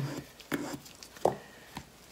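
A few light taps and clicks as a small cup of acrylic paint with a wooden stir stick in it is picked up from the table.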